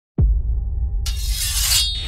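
Logo-reveal sound effect: a sudden deep hit about a fifth of a second in, with a low rumble held under it. From about a second in, a bright high hiss builds on top of the rumble and cuts off sharply just before the end.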